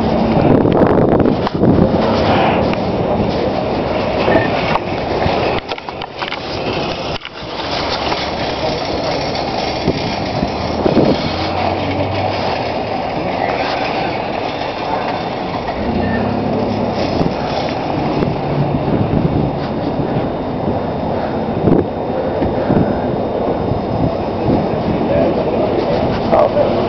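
Loud, steady rumbling and rustling noise from a handheld camera being carried in the open, with a brief quieter dip about six to seven seconds in.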